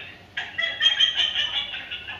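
Recorded voices played back through a mobile phone's small speaker held to the microphones: thin, tinny speech with almost no low end.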